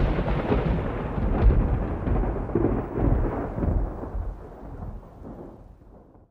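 A long roll of thunder over falling rain. It swells a couple of times, then dies away near the end.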